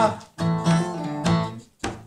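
Twelve-string acoustic guitar strummed in a steady rhythm, its chords ringing between strokes, with the tail of a sung note at the very start.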